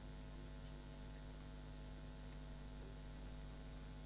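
Steady low electrical hum with faint hiss, unchanging throughout: the background noise of the recording itself, with no other sound.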